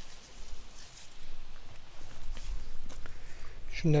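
Faint rustling and footsteps moving through tomato plants, with an uneven low rumble, before a man's voice starts near the end.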